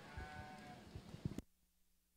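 A Border Leicester sheep bleats once, a single steady-pitched call lasting under a second, followed by a few light clicks. The sound then cuts off abruptly about a second and a half in.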